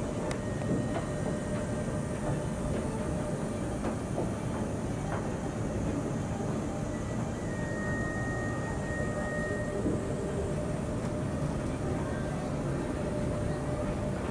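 Steady low rumble and hum of a large ship's interior, with a few faint ticks and a thin high tone held for about two seconds just past halfway.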